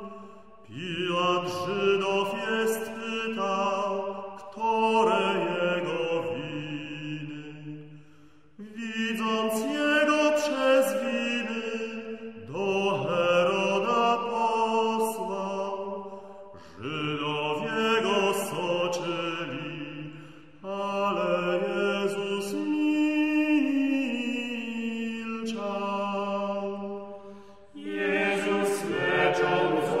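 A vocal ensemble singing a late-15th-century Polish Passion hymn in slow, chant-like phrases, each about four seconds long with a short pause for breath between them.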